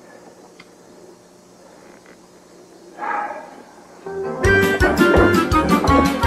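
Low, quiet room sound, a short burst of noise about three seconds in, then lively music with a steady drum beat and guitar starting a little after four seconds.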